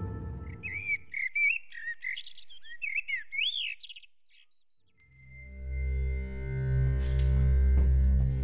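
A run of short, quick bird chirps and twitters for about three seconds as low music fades away. About five seconds in, a low sustained music drone with steady ringing high tones swells in.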